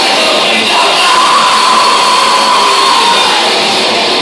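Thrash metal band playing live through a PA, a loud, dense wall of distorted guitars and drums. A high note is held over it from about a second in until near the end.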